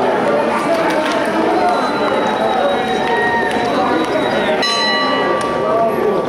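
Spectators chattering. About three-quarters of the way through, a bell is struck and rings on with several steady tones.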